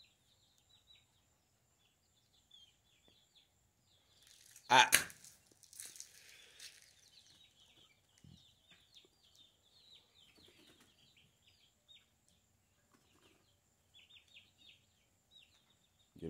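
Young chickens peeping: many faint, short, high chirps scattered through the whole stretch, busiest near the end. One loud vocal sound about five seconds in, followed by a brief rush of hiss.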